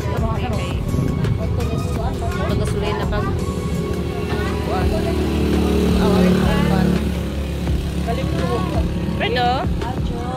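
A motor vehicle passing on the road: a low rumble that swells to a peak about six seconds in and then fades, under voices and music.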